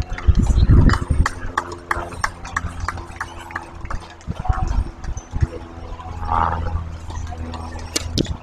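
Tennis ball being bounced on a hard court with footsteps, a series of sharp taps that come thickest in the first few seconds, over a steady low hum.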